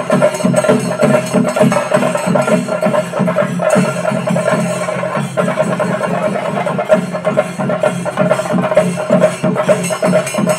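Live festival drumming: fast, dense drum strokes played without a break, with a steady held tone sounding above them throughout.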